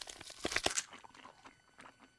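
Cartoon chewing sound effect of a mouthful of rib meat being chewed: a quick run of irregular chomps in the first second, then a few fainter ones.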